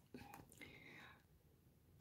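Near silence: room tone, with a faint whispered murmur of a voice in the first second.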